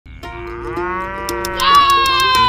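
A cow mooing: one long drawn-out call that swells about one and a half seconds in and slowly falls in pitch. Under it runs light music with a quick, even ticking beat.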